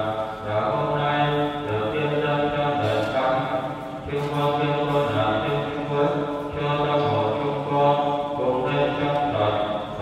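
A priest's male voice chanting a sung prayer of the Mass on sustained, steady notes, phrase after phrase with short breaks between.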